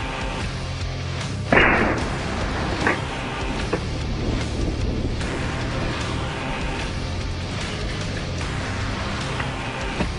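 Background music throughout, with one loud shotgun blast about a second and a half in, followed by a quieter thump a little over a second later.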